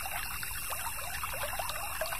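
A small stream babbling steadily: a dense, unbroken run of quick gurgles over a soft hiss of running water.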